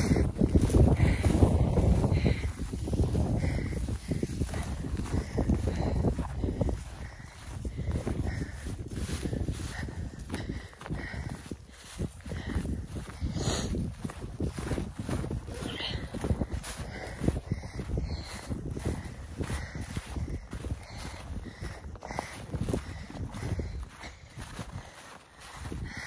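Footsteps through snow-crusted dry grass, with wind rumbling on the phone microphone, heaviest over the first several seconds.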